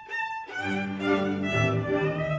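Hungarian folk string band: a lone fiddle plays the melody, and about half a second in the accompanying strings and the double bass come in underneath with low bass notes.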